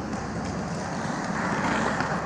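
Ice hockey skate blades gliding and scraping on rink ice, a steady hiss that grows brighter in the second half, with a few faint stick or puck ticks.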